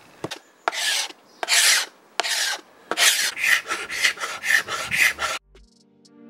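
Sheet of sandpaper rubbed by hand back and forth across a wooden panel, a rasping stroke at a time: slow strokes at first, quicker ones from about halfway. Music comes in near the end.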